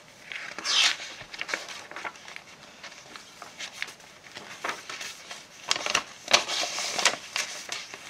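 Paper pages of a handmade junk journal turned by hand: a rustling swish about a second in and another round of rustling around six to seven seconds, with small paper ticks and crackles between them.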